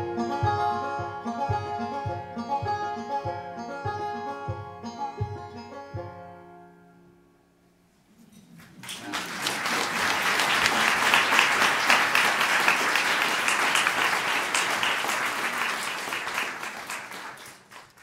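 The closing bars of a folk song played by a small acoustic ensemble of fiddle, cello, flute and French horn over a steady plucked beat, ending on a held chord that dies away. After a brief silence an audience applauds steadily, and the applause fades out near the end.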